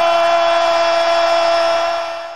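A ring announcer's voice over a microphone holding the final drawn-out "rumble" of "let's get ready to rumble!" on one steady note, beginning to fade near the end.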